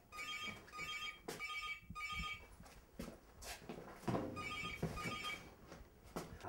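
A phone's electronic ringtone signalling an incoming call: short high trilling beeps, four in quick succession, a pause, then two more about four seconds in. A few sharp knocks sound between the rings.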